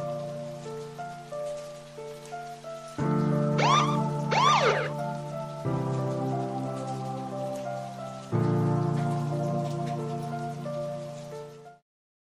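Background music: sustained synth chords that change about every two and a half seconds over a faint crackling hiss, with two quick sweeps that rise and fall about four seconds in. The music cuts off abruptly just before the end.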